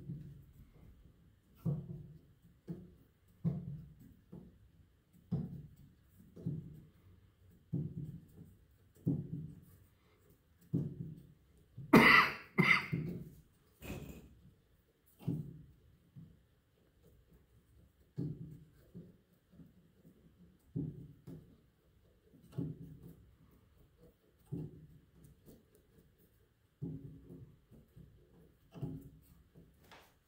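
Wooden hammershafts of an 1883 Steinway Model A grand piano action being worked up and down by hand on their flange hinges, giving dull knocks about once a second, with a louder, sharper double clack about twelve seconds in. The hinges are being articulated to loosen them to spec.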